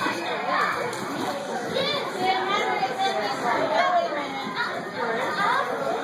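Children playing and chattering in a large gym hall, several high voices overlapping continuously.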